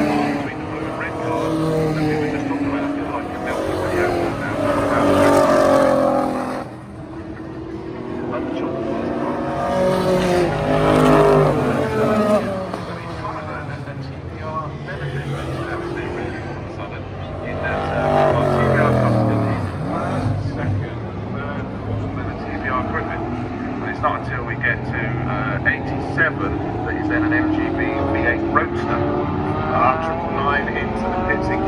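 Several V8-engined racing cars lapping a circuit, passing one after another. Their engine notes rise and fall in pitch as each car goes by, and there are short crackles near the end.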